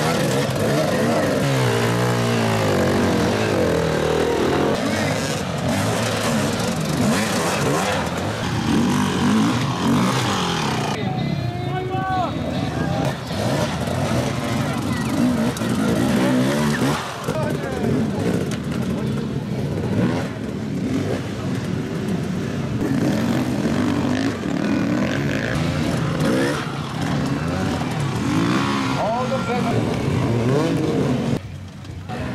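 Dirt bike engines revving hard, pitch climbing and falling repeatedly as the bikes work over rocky ground, with people's voices mixed in.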